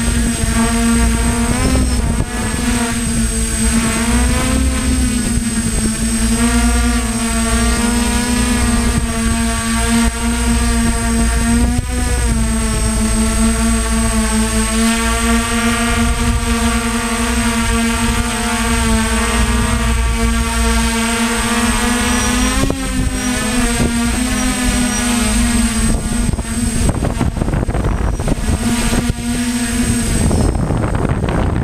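DJI F550 hexacopter's six electric motors and propellers whining in flight, heard from the camera on the craft, the pitch sliding up and down as the throttle changes. Near the end a wind rush on the microphone grows and masks the motor tone.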